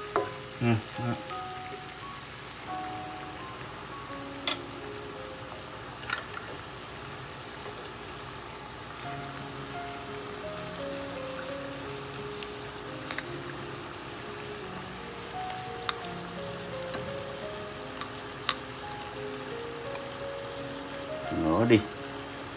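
A vegetarian mắm sauce base of leek, lemongrass and bean paste sizzles steadily in a wok as it is stirred. A few sharp taps of a utensil against the pan break in, under soft background music.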